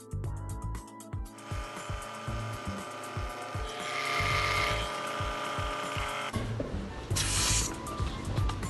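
Background music with a steady beat over a small electric air compressor running, with a short loud hiss of air about seven seconds in.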